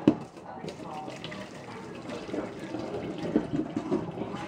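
Hot cooking water being poured off a pot of boiled potatoes into a stainless steel sink, a steady splashing pour. A sharp metal knock comes right at the start.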